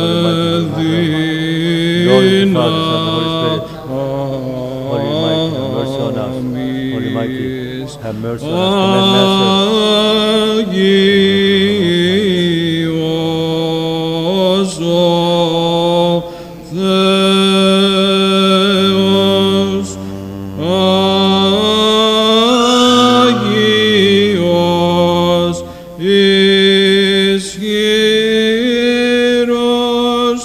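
Byzantine liturgical chant sung by male chanters in a melismatic line of long held notes, phrase after phrase with short breaks between them.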